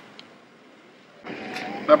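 A quiet pause, then about a second and a quarter in a steady outdoor background noise comes in, with a voice starting near the end.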